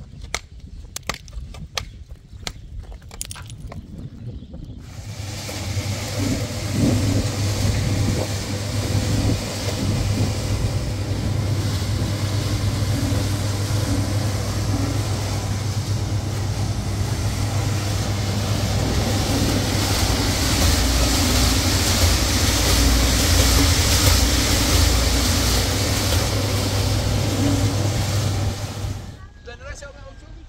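A few sharp strikes of a long-handled digging tool into stony ground, then a cement mixer starts suddenly and runs loudly with a steady low motor hum while its drum churns mortar, stopping abruptly near the end.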